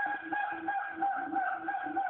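Siamang gibbon calls playing on a television: a run of short low hoots, about four a second, under one long steady high call.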